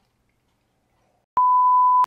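Near silence, then about one and a half seconds in a single loud, steady, high-pitched electronic bleep tone starts abruptly, the kind of pure tone edited in to censor a word or as a comic sound effect.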